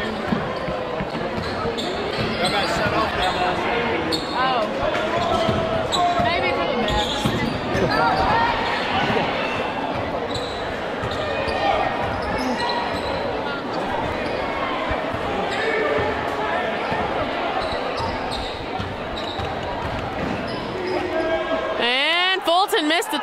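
A basketball bouncing on a hardwood gym floor amid the chatter of a crowd, in the echo of a large gymnasium.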